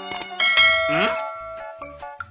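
Two quick mouse clicks, then a bright bell ding that rings on and fades over about a second: the click-and-bell sound effect of a subscribe-button animation.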